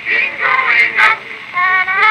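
Acoustic-era cylinder record of a man-and-woman vocal duet playing on a circa-1899 Columbia AT Graphophone through its brass horn. The voices sing and break off in short phrases, with a rising swoop of pitch near the end.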